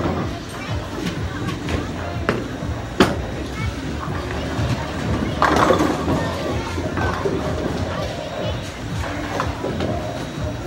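Bowling ball landing on the lane with a sharp knock about three seconds in, then pins crashing about two and a half seconds later, over the background music and chatter of a bowling alley.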